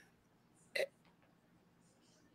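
Near silence, broken once, a little under a second in, by a very short vocal sound from one of the people on the call.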